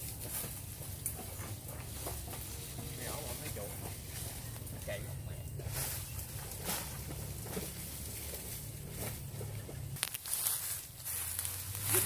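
Rustling of leaves and stems as people push and step through dense undergrowth, over a steady low rumble, with faint distant voices. The rustling grows louder about ten seconds in.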